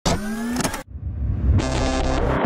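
Sound effects for an animated logo intro: a short rising glide that stops after under a second, then a fast rhythmic electronic build-up that grows louder.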